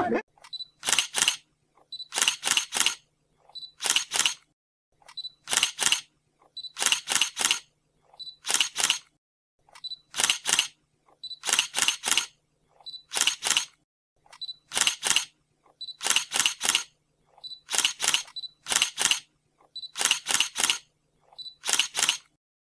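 Short groups of two or three sharp clicks, repeating about every second and a half, with dead silence between them.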